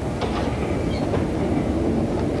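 Railway train running: a steady rumble with the clatter of wheels on the rails.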